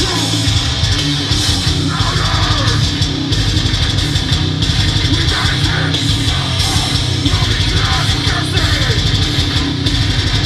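Hardcore metal band playing live and loud: distorted electric guitar and drum kit in a dense, unbroken wall of sound.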